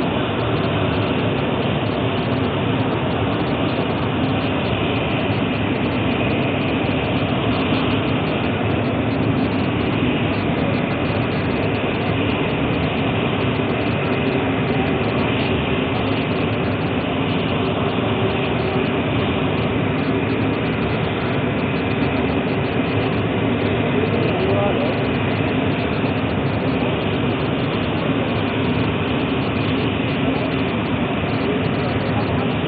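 A steady, loud drone of running machinery, unchanging throughout, with indistinct voices beneath it.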